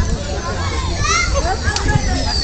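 Overlapping voices of a group of young people calling out and chattering at once, none of it clear speech, over a low rumble.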